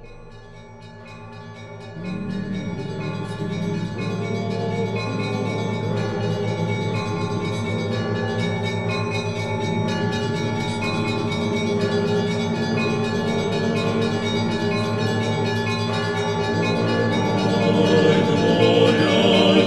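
Church bells ringing in a continuous peal of many overlapping strokes. The peal is quiet at first and grows louder about two seconds in.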